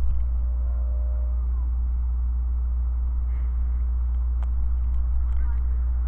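A steady low drone with no speech over it, joined by a faint short tone for about a second from half a second in and a single light click about four and a half seconds in.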